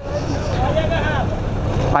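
Steady rumble of wind on the microphone over a Honda Biz's small single-cylinder four-stroke engine running as the motorcycle rides along.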